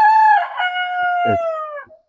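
A rooster crowing once, about two seconds long: a short opening note then a long drawn-out one that sags slightly in pitch before it stops.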